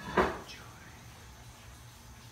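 A man's short, loud vocal outburst just after the start, then quiet room tone.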